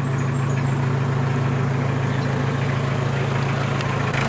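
Iseki 5470 tractor's diesel engine idling steadily.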